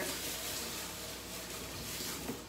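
Water running steadily from a kitchen tap into a sink.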